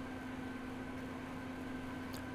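Steady low hum with a faint hiss: background noise behind a pause in the narration, with no event standing out.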